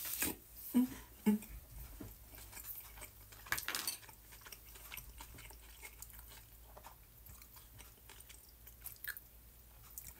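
A person chewing a mouthful of bite-sized hamburger pieces in barbecue sauce, with faint mouth sounds and a few soft clicks. Two short louder mouth noises come about a second in.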